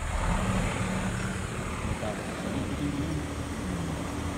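Toyota car's engine running and its tyres rolling over a gravel road, heard from inside the cabin; the low engine note shifts in pitch about halfway through.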